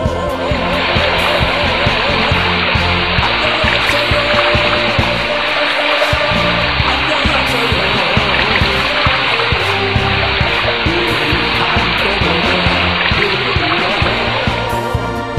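Background music with a steady rush of running water laid over it, coming in about half a second in.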